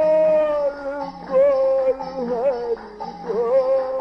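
Devotional Hindu kirtan singing: a voice holds long notes of the chant melody, with small quick turns between them, over music.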